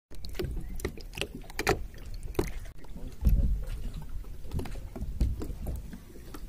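Water splashing and lapping against a small plastic boat on a lake, in irregular splashes, with a low rumble that is loudest about halfway through.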